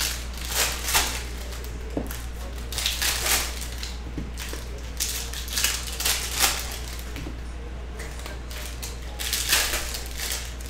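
Foil wrapper of a Panini Prizm football hobby pack crinkling in the hands and being torn open, in a string of short crinkly bursts over a low steady hum.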